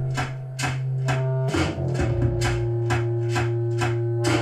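A synth-pop band playing an instrumental passage live: keyboard synthesizer and long held bass notes over a steady beat of sharp percussive hits, with no vocals.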